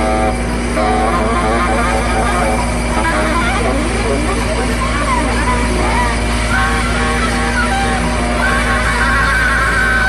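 Electronic dance music from a club DJ set: a deep steady bass drone that comes in right at the start, with warbling, voice-like sounds gliding up and down over it.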